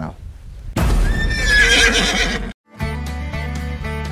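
A horse whinnying loudly for about a second and a half, a high cry that falls in pitch, cut off abruptly. After a brief silence, music starts with a steady low note.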